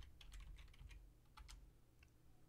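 Faint computer keyboard typing: a quick run of light key taps that stops about a second and a half in.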